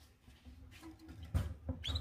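A caged bird gives a short high chirp near the end, after a single sharp click about a second and a half in, over a low steady rumble.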